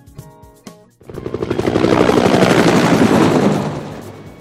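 Helicopter sound effect: rapid rotor chopping that swells in about a second in and fades out near the end, over light background music.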